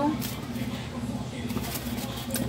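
Faint rustling of plastic cling film being handled as it is wrapped over a glass bowl, over a low steady background hum.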